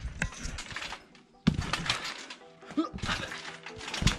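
A BMX bike and its rider bouncing on a trampoline mat: a run of thumps and rattles, with one sharp thump about one and a half seconds in.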